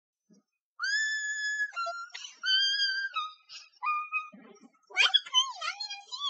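A girl's voice singing a few long, very high held notes at shifting pitches, then breaking into squeaky, high-pitched voice sounds near the end.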